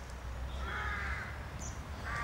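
A crow cawing: one harsh call of about half a second, a little before the middle.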